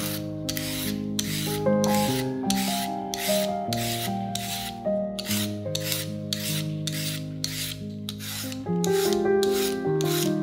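Rhythmic rasping strokes, about two a second, each a short scrape, over steady background music.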